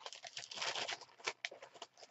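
Thin deli paper rustling and crinkling as a sheet is picked up and handled, with a few light sharp taps in the second half.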